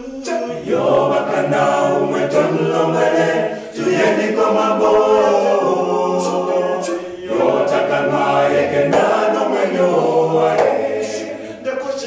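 Male vocal group singing in harmony, in phrases of about three to four seconds with a short break between each. A djembe hand drum and hand claps keep the beat underneath.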